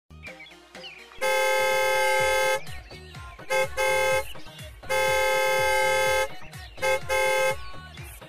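Car horn honking in a repeating pattern: a long blast, then a short one and a slightly longer one, and the whole pattern again, over background music.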